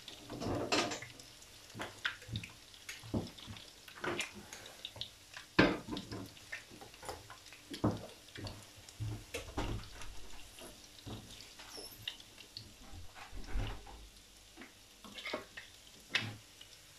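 Food frying on the hob: hot oil under breaded meat pieces crackling and popping irregularly, one pop a little over five seconds in louder than the rest.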